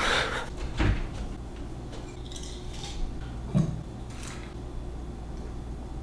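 Light handling sounds: a short rustle at the start as a sneaker is handled close up, then a few soft knocks and thumps, the clearest a little under a second in and about three and a half seconds in.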